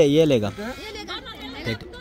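Several people talking close by, voices overlapping, one voice loudest in the first half second.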